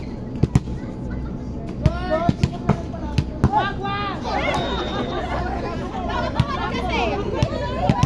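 A volleyball being played in a rally: a run of sharp impacts as the ball is struck and hits the court, several close together, with players' voices calling and shouting throughout.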